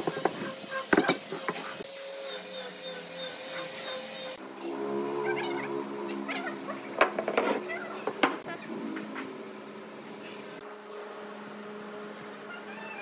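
Wooden boards knocking against each other and the workbench as they are handled and fitted together, a few sharp knocks over a steady background hum. About four seconds in, the background changes abruptly from a hiss to a lower hum.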